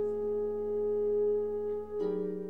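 Contemporary chamber music: bass clarinet and bass trombone holding long, steady notes together, with a brief dip in loudness just before the end.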